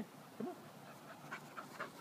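Labrador retriever puppy panting close by after running back on a retrieve: quick, even breaths about four a second, starting a little past halfway through.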